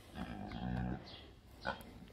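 Pot-bellied miniature pig giving a low, drawn-out grunt lasting about a second while being hugged: a contented grunt, his 'happy' sound.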